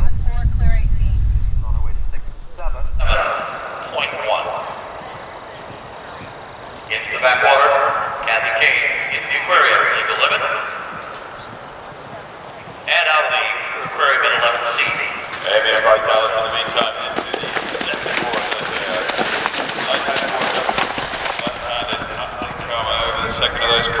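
Wind rumbling on the microphone for the first few seconds, then background voices talking and a horse's hoofbeats on turf as it gallops past at cross-country speed.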